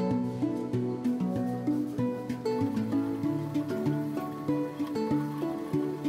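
Background instrumental music with plucked-guitar notes.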